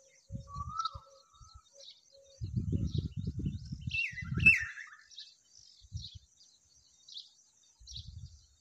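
Small birds chirping: faint high chirps repeat all through, with a short rising whistle early and two louder downward-slurred calls a little after halfway. Low scuffling noises come in around the middle.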